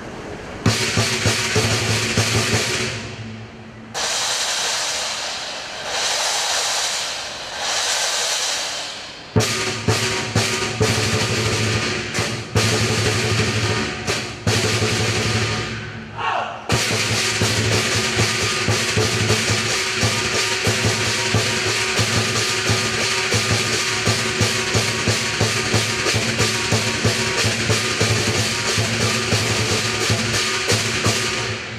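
Lion dance percussion: a large Chinese lion drum with hand cymbals and gong. It opens with several swelling cymbal washes that each die away, then about nine seconds in breaks into fast, steady beating with cymbal clashes, which stops briefly a little past halfway and then carries on.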